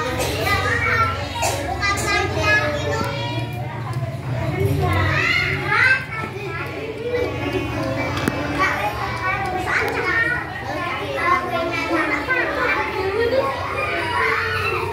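Young children's voices chattering and calling out, several at once, with no let-up.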